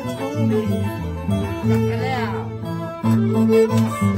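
Harp and violin playing a folk tune, with men's voices singing along.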